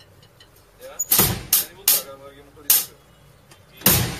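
Drum kit struck by a boy in a few uneven, loud hits starting about a second in, about five in all, the first and last with a deep bass-drum thump.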